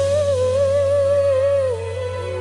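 Music: a single voice holding one long wordless hummed note with a slight waver, gliding down in pitch near the end, over a steady low sustained accompaniment.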